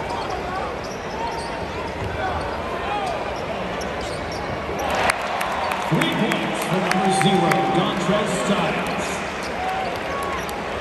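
Basketball bouncing on the hardwood court amid steady arena crowd noise. About halfway through comes a run of sharp bounces, and a voice close by is raised for a couple of seconds.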